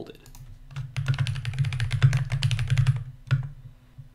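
Typing on a computer keyboard: a quick run of keystrokes lasting about two seconds, starting about a second in, then a single keystroke after a short pause.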